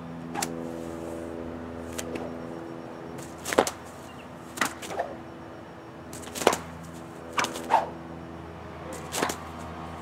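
A bullwhip cracking again and again in a fast figure eight, alternating front and back cracks. The sharp cracks come about every one to one and a half seconds, some of them close pairs.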